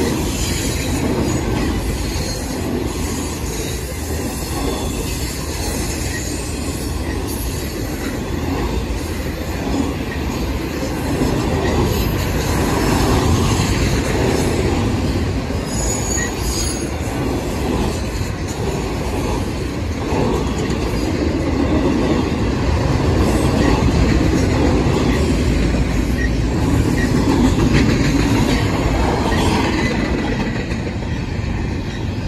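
Freight train autorack cars, then double-stack container cars, rolling steadily past: a continuous rumble and clatter of steel wheels on rail. A brief high squeal comes about halfway through.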